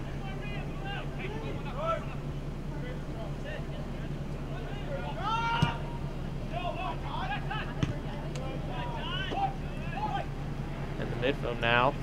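Scattered shouts and calls of soccer players on an open pitch over a steady low hum, with a louder call and a sharp knock about five and a half seconds in and another brief knock near eight seconds.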